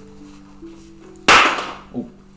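Bible pages being turned: one loud, quick paper rustle a little over a second in, with a small knock near the end, over soft sustained keyboard-style background music.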